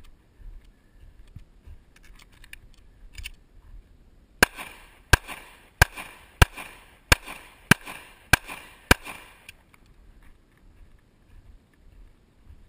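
Semi-automatic pistol fired eight times in a steady string, about one and a half shots a second, starting about four seconds in. Faint rustling comes before the first shot.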